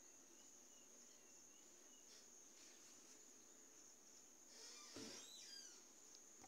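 Near silence: faint room tone with a thin steady high-pitched whine, and a soft rustle of fabric being laid in place about four and a half seconds in.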